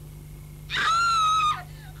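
A single high-pitched cry, starting about a second in and held for just under a second, falling slightly at the end.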